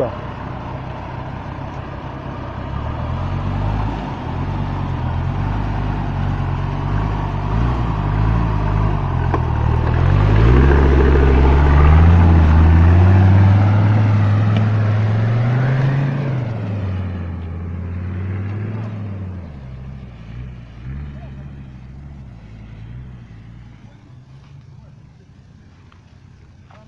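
Off-road SUV engine revving up and down in pitch as it drives through deep mud ruts. It is loudest about halfway through, then fades as the vehicle pulls away into the distance.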